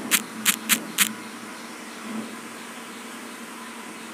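Four quick clicks within about a second: taps entering a four-digit PIN on a smartphone keypad, over a steady low room hum.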